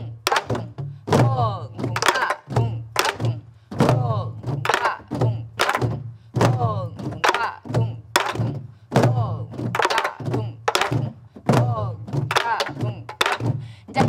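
A group of sori-buk (Korean pansori barrel drums) playing together in the jungjungmori rhythm, struck with sticks and palms. Deep booming head strokes (deong, kung) alternate with sharp stick cracks (ttak) in a steady, lilting triple-feel cycle of about two to three strokes a second.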